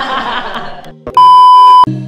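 Laughter over background music, then about a second in a loud, steady, high electronic bleep tone that lasts under a second and cuts off sharply.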